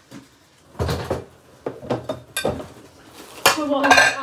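Dishes and cutlery clattering as they are handled: a few separate knocks and clinks. A voice starts near the end.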